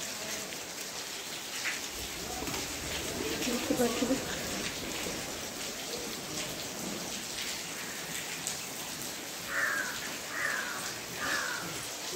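Steady rain falling on roofs and trees, with many individual drops tapping close by. Near the end, three short falling calls about a second apart.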